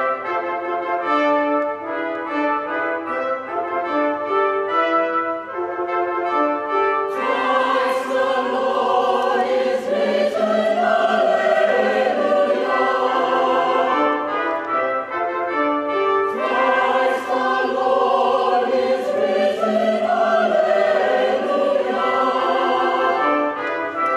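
Festive church music led by brass: a line of separate held notes, then a fuller, louder passage with choir-like voices joining about seven seconds in, easing briefly around the middle and swelling again.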